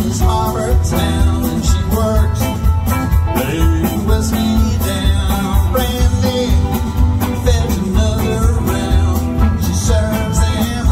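Live bluegrass band playing with a steady beat: banjo, acoustic guitars, upright bass and drums.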